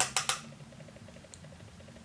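Three quick light clicks in the first moments as a plastic makeup compact and brush are handled, then faint room tone.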